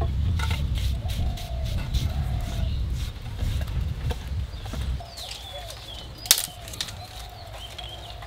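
Knocking and scraping as firewood is handled and a small tin scoops ash out of a clay mud stove, with a sharp knock about six seconds in. A low rumble under it drops away about five seconds in, and faint bird calls come through in the background.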